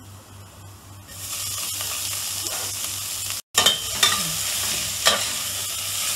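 Chopped onions hitting hot oil in a stainless steel pot and sizzling steadily from about a second in, then stirred with a spoon scraping through them. The sound cuts out for an instant midway.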